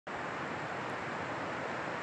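Steady, even rushing of the Cispus River flowing, with no change in level.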